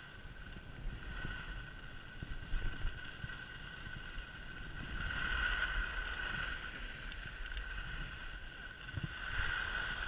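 Wind rumbling on the camera microphone while riding downhill, with the hiss of a board sliding over groomed snow; it swells about halfway through and again near the end, over a faint steady whistling tone.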